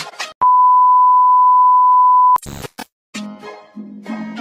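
A loud, steady beep tone, one pitch held for about two seconds, cuts in over cartoon background music like a censor bleep. It ends in a short noisy burst and a brief silence before the music resumes.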